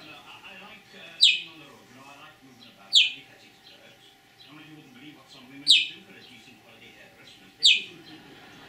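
Budgerigar giving four loud, sharp chirps, each a quick downward sweep in pitch, spaced about two seconds apart.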